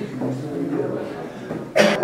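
Several people talking at once in a room, none clearly, with one loud cough near the end.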